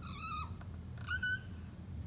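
Felt-tip marker squeaking on a whiteboard as a letter is drawn: two short high squeaks, one near the start and one about a second in.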